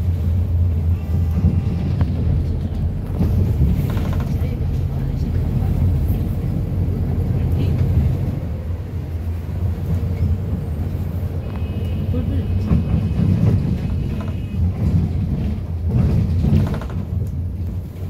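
Low, steady drone of a city bus's engine heard from inside the passenger cabin, with a faint high tone briefly near the middle.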